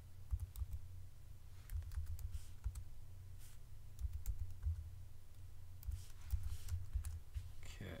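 Computer keyboard typing: irregular, unhurried keystrokes, about two a second, as a short line of text is typed.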